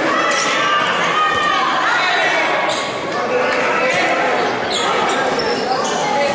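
A handball bouncing on the wooden court as a player dribbles, with players' shouts and calls echoing around the sports hall.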